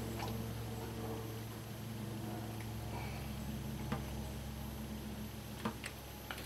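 Quiet hand-handling of a wired AC plug end: a few small clicks as the wires are pinched into the plastic housing, over a steady low hum.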